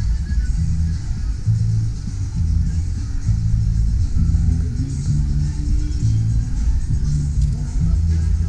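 Music with a deep bass line that steps from note to note.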